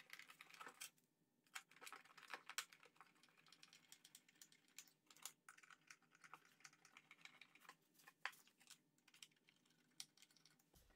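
Faint, irregular light clicks and taps of screws and a screwdriver being handled while a scooter's seat hinge is fastened back onto its plastic body.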